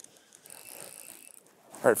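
Fly reel's click-and-pawl ratchet running as line moves while a brook trout is played in, faint and lasting about a second.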